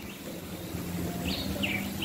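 Small birds chirping outdoors: two short, falling chirps about a second and a half in, over quiet open-air ambience.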